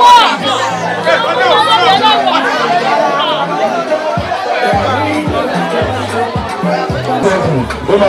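Several people chattering over background music with a bass line; a steady beat comes in about halfway through.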